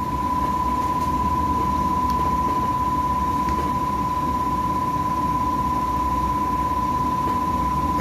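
Steady low background rumble with a constant high-pitched tone over it.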